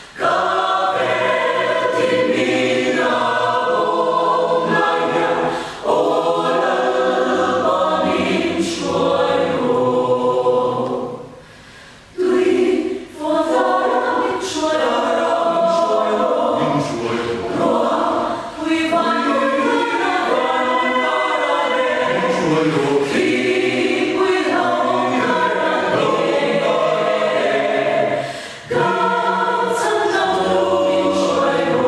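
Mixed choir of women's and men's voices singing a hymn together in long phrases, with a short break about twelve seconds in.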